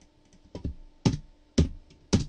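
Computer keyboard keys pressed one at a time as a number is typed in: a few short, sharp clicks about half a second apart.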